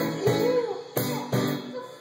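A live band playing: a strummed acoustic guitar with a drum kit and a woman singing, with sharp accented hits near the start, about a second in and again just after.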